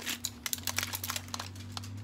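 Thin plastic cookie tray crinkling as a chocolate-coated cookie is pulled out of it: a quick, irregular run of sharp crackles and clicks.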